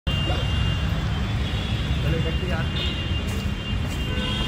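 Visitors' voices in a stone gateway over a steady low rumble, with a faint steady high tone; one voice says "yeah" about halfway through.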